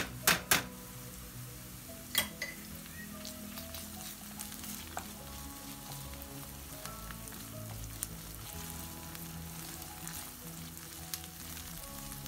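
Chopped onions and tomato paste sizzling in hot olive oil in a pan while being stirred with a wooden spoon. A few sharp knocks come in the first half-second, with single clicks later.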